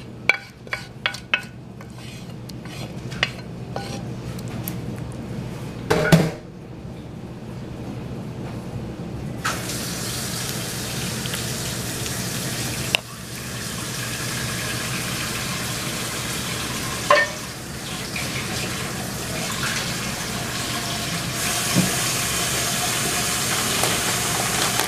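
A spoon scrapes and taps against a cooking pan for the first few seconds. Then water runs steadily from a kitchen tap, its flow changing a couple of times.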